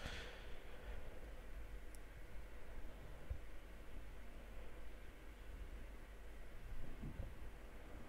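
Quiet workshop room tone with a steady low hum and a few faint soft clicks from small metal headlamp parts being handled.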